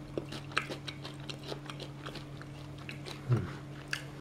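Close chewing and biting of deep-fried adult cicadas with hard shells: a run of short crisp cracks and clicks over a steady low hum. There is a brief hummed 'mm' about three seconds in.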